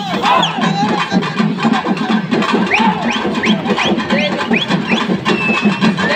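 Drums playing a steady, quick beat over the noise of a large crowd, with a run of short rising high notes, about four a second, near the middle.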